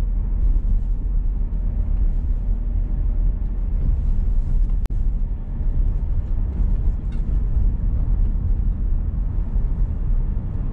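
Steady low rumble of road and engine noise heard inside a moving car's cabin, with a momentary break in the sound about halfway through.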